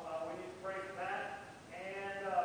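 Slow singing with long held, wavering notes.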